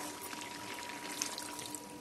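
Warm water being poured into a metal pan of mutton curry, a steady pour.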